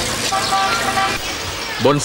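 Busy street ambience: many overlapping voices and traffic noise, with a short steady tone early on. A man's narrating voice begins right at the end.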